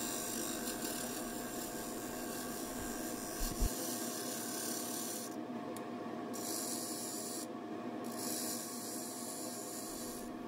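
Wood lathe running while a turning tool cuts the inside of a dry mesquite bowl: a steady scraping hiss of the tool on the spinning wood, with a faint steady hum underneath.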